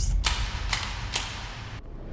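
Three sharp clicks or knocks about half a second apart over a low rumble, fading toward quiet near the end.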